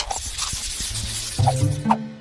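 Background music with a swishing transition sound effect at the start that fades out over about a second.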